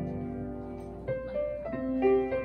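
Slow instrumental music on a keyboard: held notes and chords that change about once a second.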